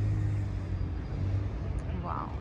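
A motor vehicle passing close by, its engine a steady low hum that drops away near the end.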